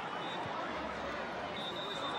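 Stadium crowd noise: a steady hubbub from the spectators at a Gaelic football ground.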